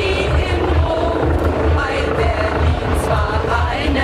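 Police helicopter flying overhead, its rotor noise a low, pulsing drone. A group of voices singing carries on above it.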